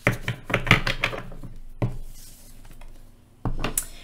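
A deck of tarot cards being shuffled by hand: a quick run of card clicks and slaps that thins out after about two seconds, with one louder knock near the end.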